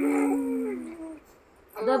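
A baby's long drawn-out cooing vowel, lasting about a second and sliding slightly down in pitch. A short voice starts near the end.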